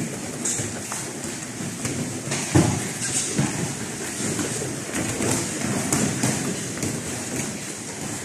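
Kickboxing sparring on a padded mat: gloved punches and kicks landing with soft thuds and feet shuffling, with one sharper, louder thud about two and a half seconds in.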